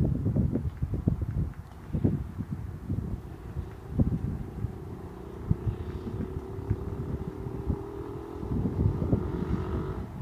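Gusty wind buffeting the microphone, with the faint drone of a distant engine coming in about halfway through and rising slowly in pitch.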